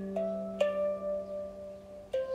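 Slow handpan music: single notes struck a moment apart, each left to ring and fade over the tones still sounding.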